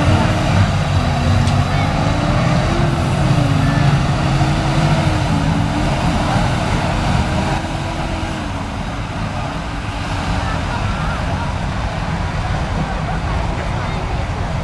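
Farm tractor's diesel engine running hard under heavy load as it drags a weight-transfer pulling sled, its pitch wavering up and down, easing off a little about halfway through.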